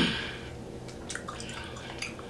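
Close-miked wet mouth sounds of gum being chewed: soft clicks about a second in and again near the end, after a loud sudden sound right at the start that fades quickly.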